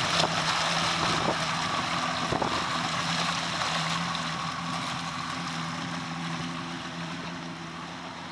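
Yamaha 130 hp V4 two-stroke outboard running under way: a steady engine note over the rush of churned water and wind, easing off slightly in loudness over the seconds.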